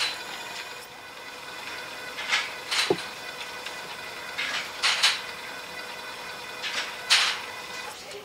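Short rustling handling noises of plastic lab tubing being moved and arranged, coming in three pairs, over a steady faint hum of laboratory equipment.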